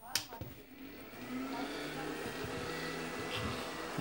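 A 1000 W car power inverter switched on after repair: a click, then its cooling fan spinning up within about a second to a steady running hum with a faint high whine, the sign that it powers up.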